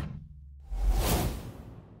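A whoosh sound effect: a rush of noise that swells and fades over about a second, with a deep low bump as it starts. The last of the guitar music fades out just before it.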